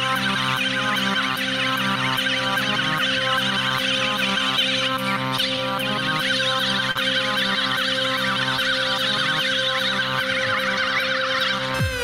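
Beatboxer's live loopstation routine: layered vocal loops making electronic dance-style music, with a steady held note over a repeating beat.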